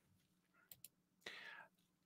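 Near silence: a couple of faint clicks a little under a second in, then a faint short breathy sound just before speech resumes.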